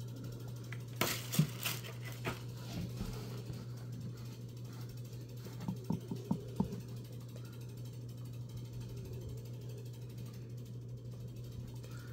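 A few light clicks and knocks of a vinyl Funko Pop figure being handled and set down on a cloth-covered table, in two short clusters, one a second or two in and one about six seconds in. A steady low hum runs underneath.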